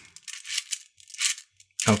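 Beads of a Hasbro Atomix moving-bead puzzle clicking and rattling in their tracks as the rings are turned by hand, in a few short clusters of light clicks.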